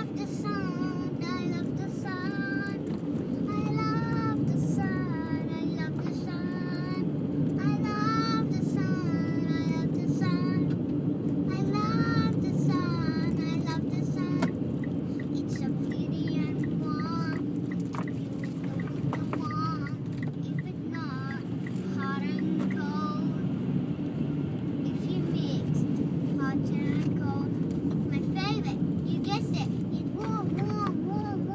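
A young girl singing a made-up song in high, wavering phrases over the steady road and engine hum inside a moving car's cabin.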